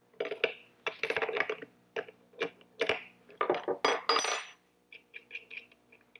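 Metal clinks and clatter as a wrench works the arbor nut of a router and the steel cutters, bearing and nut of a stacked rail-and-stile bit are taken apart by hand to swap the cutters round. The clatter is dense for the first four seconds or so, then thins to lighter ticks.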